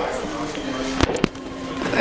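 Two sharp knocks about a fifth of a second apart, about a second in, over a steady hum and faint voices.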